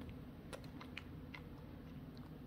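A few faint, scattered key clicks on a computer keyboard over a low, steady background hum.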